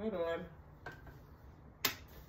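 A brief wordless vocal hum at the start, then the bassinet's metal frame parts clicking as they are handled: a faint click about a second in and a sharp, louder click near the end.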